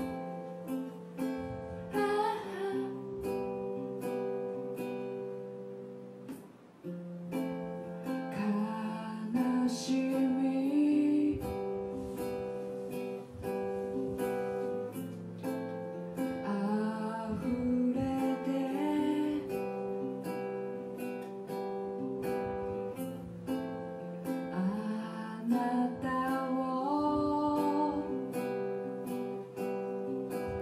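A woman singing a Japanese folk-style song to her own strummed acoustic guitar, the sung phrases coming and going over steady chords.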